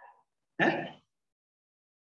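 One short, loud vocal sound from a person, sudden in onset and under half a second long, about half a second in.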